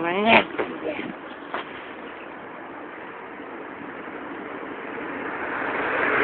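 Steady hiss of road traffic, with no distinct engine note, swelling louder near the end.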